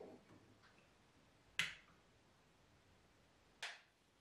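Two sharp match strikes on a matchbox, about two seconds apart, each a quick scratch that fades fast, to light a wood-fired cookstove. A few soft clicks come at the start.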